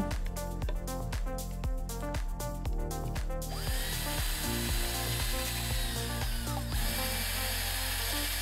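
Background music with a beat, then a cordless drill boring a pilot hole through a hinge mounting-plate template into a cabinet panel. It starts a little before the middle and runs for about three seconds, its whine rising as it spins up and dropping as it stops.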